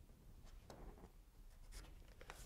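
Near silence with the faint scratch of a pencil marking drywall, heard twice: about a third of the way in and again near the end.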